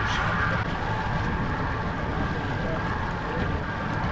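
Fishing reel drag whining steadily as a fish pulls line, cutting off about half a second in when the line snaps because the drag was set too tight. The outboard motor runs at trolling speed underneath, with wind and water noise.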